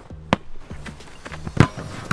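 A football being kicked hard: a sharp, loud thud about one and a half seconds in, after a lighter knock near the start.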